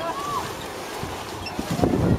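Water polo players swimming and splashing in an outdoor pool, with a brief distant shouted call just at the start and wind buffeting the microphone near the end.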